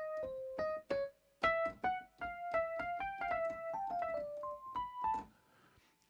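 Rhodes electric piano patch in Cubase playing a melody one note at a time, with a short pause about a second in, stopping a little after five seconds in. Snap Live Input holds every played note to the E major scale.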